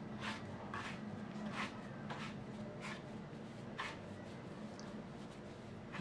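Fingers rubbing and raking a flour-and-sugar mix as water is worked in to form crumbs: faint, soft scratchy rustles at irregular intervals, roughly one a second.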